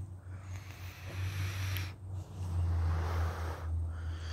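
A long drag through a box-mod vape, an airy hiss of about a second and a half, then after a brief pause a long breathy exhale of the vapor cloud, all over a steady low hum.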